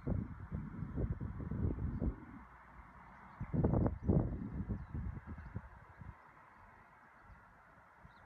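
Wind buffeting the microphone: irregular low rumbling gusts, strongest in the first two seconds and again around four seconds in, dying down after about six seconds.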